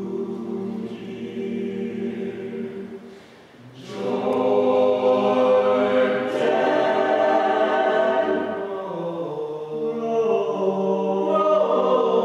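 Male a cappella group singing in close harmony with no instruments. A softer sustained chord fades briefly, then the voices come back louder and fuller about four seconds in and hold there.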